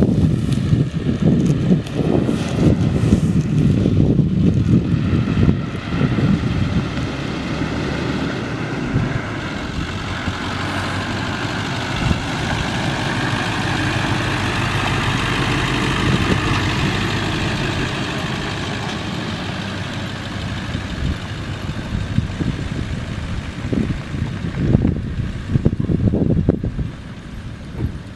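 1999 Ford F-250's 7.3-litre Power Stroke turbo-diesel V8 running, its pitch rising and then easing back in the middle. Wind buffets the microphone in the first few seconds and again near the end.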